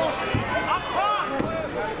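Voices of people talking and calling out in the hall, with a couple of short dull thuds on the wrestling ring mat, one about a third of a second in and another near the middle.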